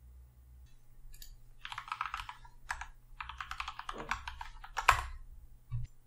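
Computer keyboard being typed on: a short run of quick keystrokes about two seconds in, then a longer run from about three to five seconds, as login details are entered.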